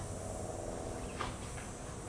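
Quiet outdoor background noise with a steady high-pitched drone and a single faint tap a little over a second in.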